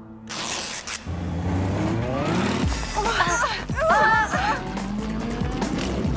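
Cartoon motor scooter engines running and revving, their pitch rising, over background music.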